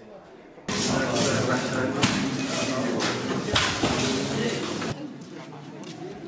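A person's voice speaking, loud and close, starting suddenly just under a second in and cutting off shortly before the end.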